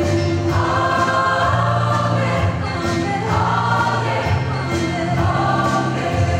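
Mixed choir of women's and men's voices singing in held chords, with new phrases entering every two to three seconds.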